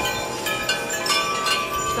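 Wind chimes ringing: several tones at different pitches are struck one after another and ring on, overlapping.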